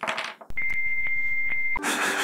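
A censor bleep: one steady, high-pitched electronic tone, about a second and a quarter long, starting and stopping abruptly and dubbed over the speech.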